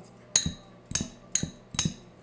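Metal fork clinking against a small ceramic bowl while stirring: four short, ringing clinks, about two a second.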